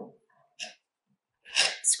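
A woman's voice: a spoken word ends right at the start and a short breathy puff follows about half a second later. After near silence she begins speaking again in the last half second.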